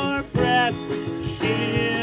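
Live song on a strummed acoustic guitar with a drum kit, a man's voice holding long sung notes over them.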